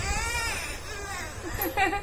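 A toddler vocalising in a high voice: one drawn-out sound that rises and falls in pitch, then a few shorter sounds near the end.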